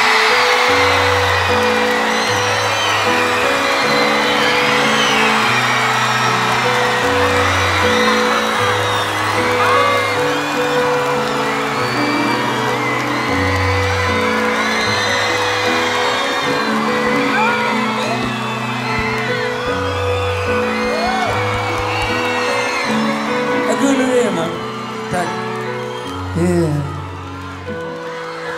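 A huge concert crowd singing a song together in unison over a live band with a prominent stepping bass line. Scattered whoops rise out of the crowd.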